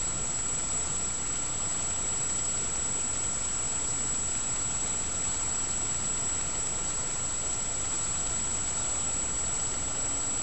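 Steady background hum and hiss with a thin high-pitched whine, unchanging throughout, with no distinct events.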